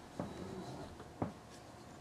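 Faint rustling with two soft thuds about a second apart, like a person shifting and bumping about on a couch in a small room.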